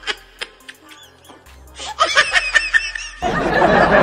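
Laughter in short repeated bursts, with music underneath. About three seconds in, a louder, muffled noisy sound takes over.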